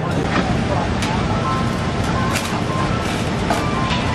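Steady low rumble of a busy street, with traffic and indistinct voices in the background and a few light clicks.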